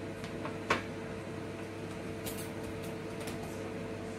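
Plastic popsicle molds being set on a freezer shelf: a sharp plastic knock about a second in, then a few light clicks and rattles, over a steady appliance hum.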